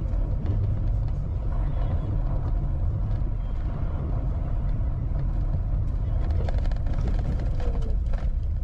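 Steady low rumble of a car's engine and tyres heard from inside the cabin while driving along a narrow, worn asphalt road.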